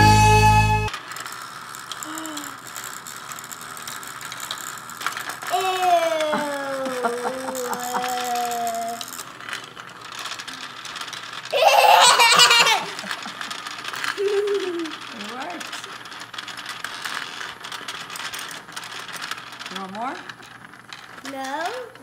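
HEXBUG Nano Nitro vibrating micro robot bugs buzzing and rattling steadily as they skitter through a plastic habitat. Short child's voice calls come and go over it, with a loud squeal of laughter about halfway through.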